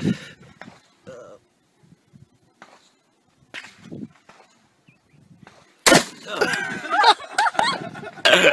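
A single shotgun shot about six seconds in, the loudest sound, followed at once by loud laughter. A short laugh comes near the start.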